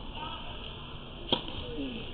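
A tennis ball struck hard by a racket, heard once as a single sharp crack a little past halfway, in a large indoor tennis hall.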